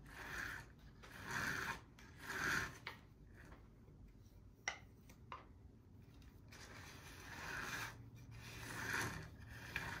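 A potter's scraping tool drawn in short strokes over the soft wall of a wet coil-built clay cup to smooth out the coil lines and score marks: three quick scrapes, a couple of light clicks, then two more scrapes near the end.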